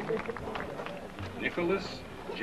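Indistinct voices of people talking, with no words made out, quieter than the announcer's reading of names.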